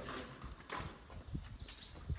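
A few faint, scattered knocks and clatters, about a second apart, over a quiet background.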